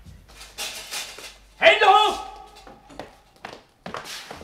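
Sound effects of a locked door being forced open: a scraping rustle, then a loud, short pitched sound about one and a half seconds in, and a few sharp knocks near the end.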